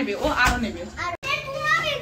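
A young child's high-pitched voice chattering. There is a soft thump about half a second in, and the sound cuts out for an instant just after a second in.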